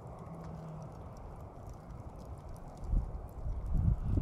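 Light crackling and ticking of a wood fire's glowing embers over a low, steady rumble. From about three seconds in, loud, irregular low thuds come in.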